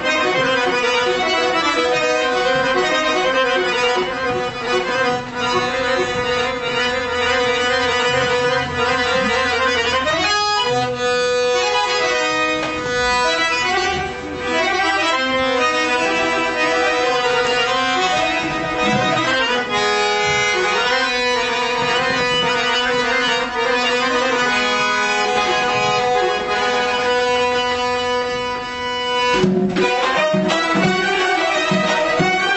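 Accordion playing a traditional Azerbaijani melody of long held notes, with phrase changes about a third and two-thirds of the way through.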